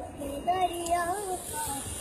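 A high-pitched voice, like a child's, singing or chanting in a few held, wavering notes.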